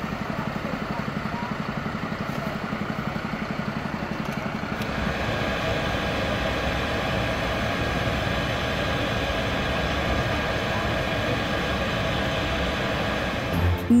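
Diesel fire engines idling with a low, rhythmic throb. About five seconds in, this gives way to the steady drone of a ventilation fan blowing air through a flexible duct into the building, with a few steady whining tones over it.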